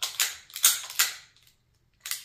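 Ruger P95DC 9 mm pistol, magazine out, having its slide worked by hand: several sharp metallic clicks and scrapes of steel on steel in the first second and a half.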